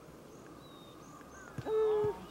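Faint high bird chirps, then near the end a loud, short, flat-pitched vocal "ohh" held for about half a second: a person reacting as the tee shot lands on the green.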